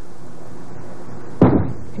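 A bowling ball landing on the wooden lane at release with one heavy thud about one and a half seconds in, over a steady background hum of the bowling centre.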